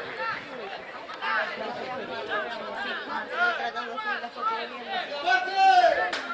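Several voices of players and spectators calling out and chattering over one another in celebration of a goal, with one loud, high call near the end.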